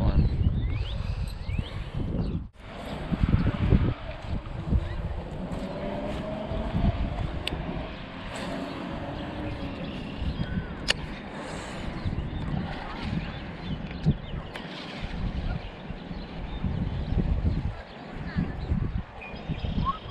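Wind buffeting the microphone in an uneven low rumble, with a few sharp clicks scattered through it.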